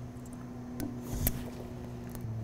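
A child chewing food in a quiet room, with two brief faint clicks from the mouth over a steady low hum.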